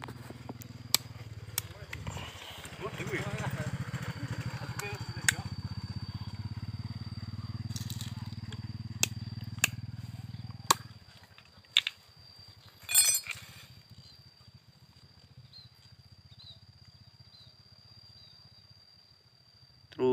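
Plastic pesticide bottle and cap being handled and measured over a bucket: scattered sharp clicks and a short louder rattle about 13 seconds in. A low steady hum sits underneath and stops about eleven seconds in, and a faint high steady tone carries on throughout.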